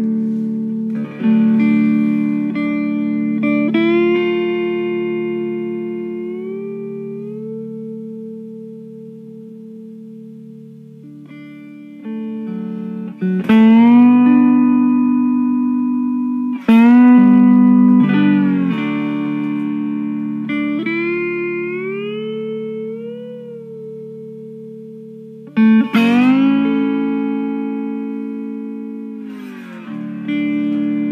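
Homemade six-string cigar box guitar being played: chords are struck every few seconds and left to ring and fade slowly, and several notes slide upward in pitch as they ring.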